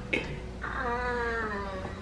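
One long, high-pitched vocal call of about a second, gliding slowly down in pitch, preceded by a brief click.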